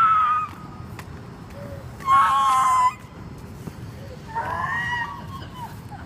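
A person screaming in distress: three long, high cries about two seconds apart.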